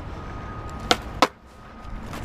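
Skateboard wheels rolling on concrete pavement, then two sharp wooden clacks about a third of a second apart as the tail pops for an ollie and the board lands. The rolling stops after the second clack.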